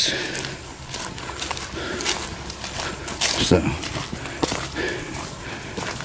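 Footsteps of a person walking on a sandy dirt trail covered in dry leaves and fallen palm fronds, as a run of separate, uneven crunching steps.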